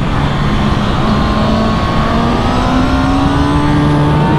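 2018 Kawasaki ZX-6R's inline-four sportbike engine pulling hard out of a corner, its note rising steadily in pitch from about a second in, over a heavy rush of wind noise at speed.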